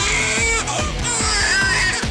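A baby crying over a pop song's backing track with a steady beat.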